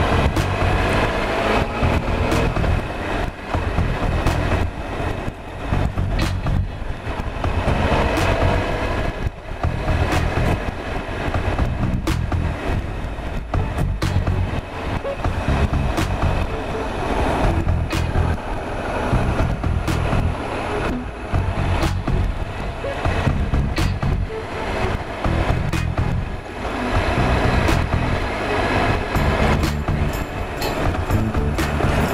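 Triumph Explorer XCa's 1215cc three-cylinder engine running at a steady, gentle pace while riding, with frequent short knocks and clicks over the top.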